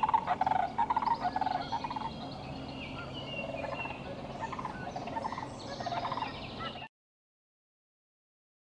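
Sandhill cranes calling: several birds giving overlapping rattling calls, loudest in the first two seconds. The sound cuts off abruptly about seven seconds in.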